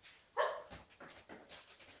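A dog barks once, short and loud, then a few light scuffling steps follow as it moves onto a training platform.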